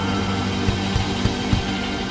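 Live soul band playing a held chord, with drum strikes punctuating it.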